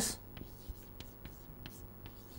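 Chalk writing on a chalkboard: faint, scattered scratches and taps as symbols are written.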